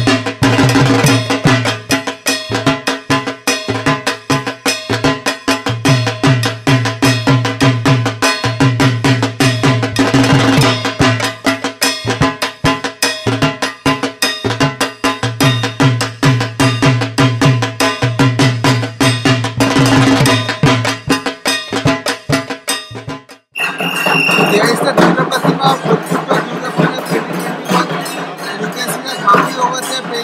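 Dhak, the Bengali barrel drums, beaten by dhakis in a fast, dense, driving rhythm. About 23 seconds in, the drumming cuts off abruptly, giving way to crowd noise with a steady high tone.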